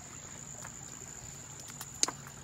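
Insects trilling in one steady, high-pitched unbroken tone, with a few faint ticks near the end.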